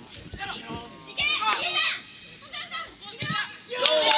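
Players and spectators at a football match shouting short calls during an attack, breaking into loud, sustained shouting near the end as the ball reaches the goal.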